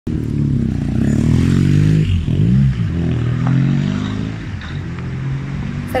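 BMW car engine running under way, its revs rising and falling, with a sharp dip and recovery about two seconds in.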